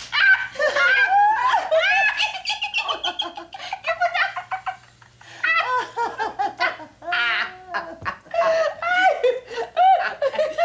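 A woman laughing heartily in repeated bursts, with a short lull about halfway through.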